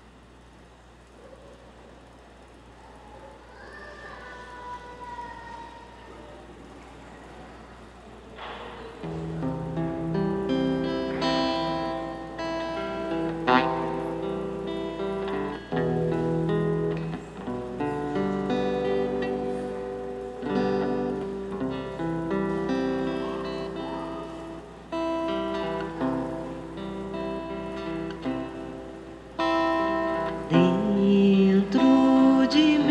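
Low, quiet church room sound, then from about nine seconds in, instrumental guitar music with plucked, ringing notes that plays on to the end.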